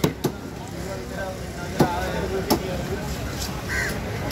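A heavy cleaver chopping through a large trevally into a wooden block. There are two sharp strikes in quick succession at the start, then two more about two and two and a half seconds in.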